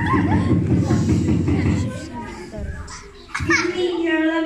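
Young children's voices and chatter over a low rumble of movement that dies down about halfway through. A child's voice rises clearly near the end.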